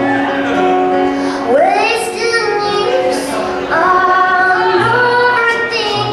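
A woman singing to her own acoustic guitar accompaniment; her voice slides up into a high held note about a second and a half in, over steady sustained guitar notes.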